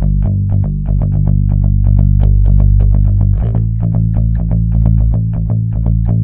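Electric bass guitar playing a steady eighth-note line on G, about four notes a second, then moving up to A about three and a half seconds in.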